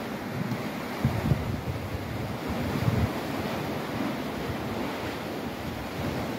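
Wind buffeting the microphone over a steady rush of wind and sea, with stronger low gusts about a second in and again around three seconds.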